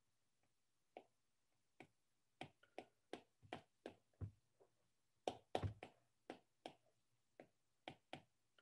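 Faint, irregular clicks and taps of a stylus touching down on a drawing tablet as lines are drawn, about twenty in all, with a cluster of louder ones a little past the middle.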